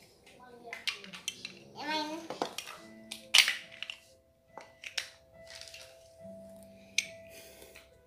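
Plastic toy building blocks clacking and clicking as a small child handles and fits them together, with one sharp clack about three and a half seconds in. Soft background music with long held notes comes in about three seconds in.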